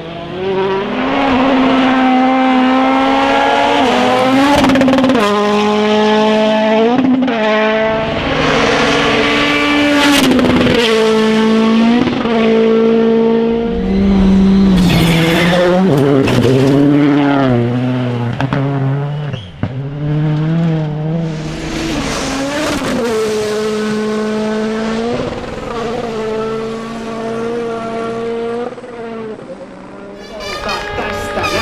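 World Rally Car engines, 1.6-litre turbocharged four-cylinders, at full throttle on gravel stages, one car after another. The pitch climbs and drops back at each gear change, with a few sharp cracks along the way.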